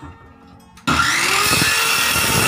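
Handheld circular saw switched on about a second in, its motor whining up to speed and then running loud and steady.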